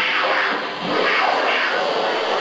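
Loud, dense noise from a live experimental sound performance, swelling and sweeping downward in pitch about twice a second.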